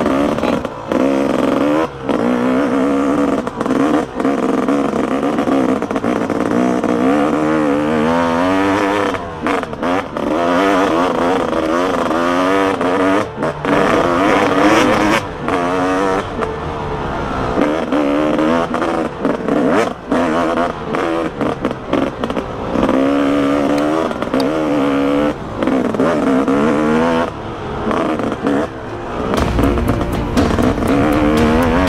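Dirt bike engine revving up and down repeatedly as it is ridden along a bumpy dirt track, with short knocks and rattles from the bike over the bumps.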